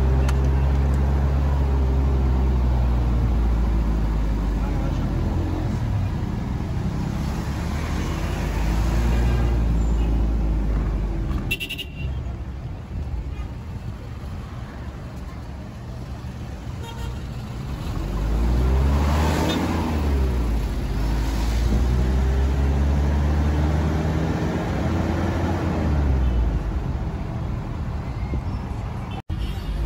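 City street traffic: car engines running, their pitch rising and falling as vehicles speed up and slow down, with a short sharp click about twelve seconds in.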